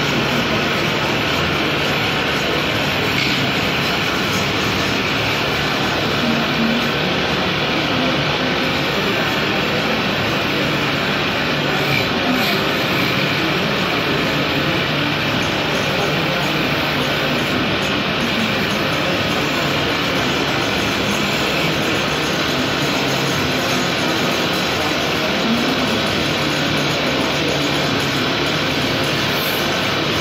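Belt-driven wood lathe running while a hand-held gouge cuts into the spinning timber blank: a steady, unbroken scraping hiss of wood being turned, with a low machine hum beneath.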